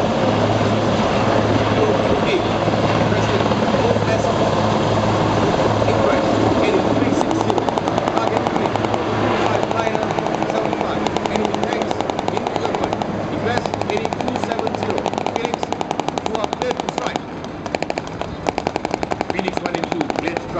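Super Puma helicopter hovering and flying off: steady rotor and engine noise with a fast, even beat of the blades, fading near the end.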